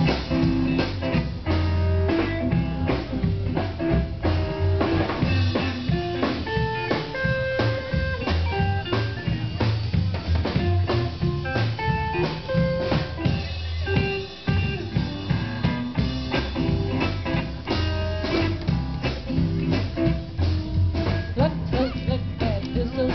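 Live punkgrass band playing, with plucked string notes over a steady drum beat.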